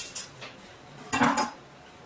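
A meat cleaver and a chef's knife clattering down onto a wooden butcher-block surface: a couple of light clicks at the start, then one loud, short metallic clatter about a second in.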